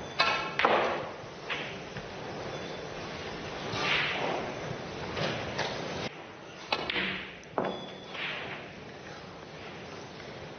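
Snooker balls being struck and potted during a break: sharp clicks of cue on cue ball and of ball on ball, with balls dropping into the pockets. There are several separate knocks spread over the seconds.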